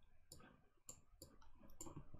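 Near silence with several faint, short clicks scattered through it.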